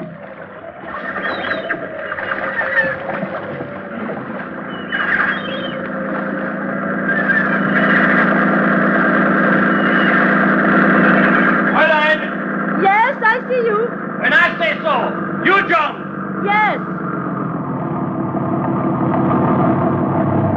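Motorboat engine sound effect humming steadily and growing louder over about ten seconds, as of a boat approaching. In the second half come a string of short, sharply rising and falling voice-like calls.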